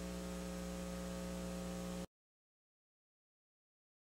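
Steady electrical mains hum with a stack of overtones on the recording's soundtrack. It cuts off suddenly to dead silence about halfway through.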